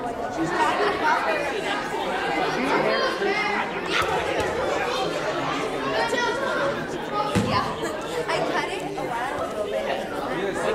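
Many voices chattering at once, echoing in a large gymnasium, with no single speaker standing out. A sharp click about four seconds in and a short low thump a few seconds later.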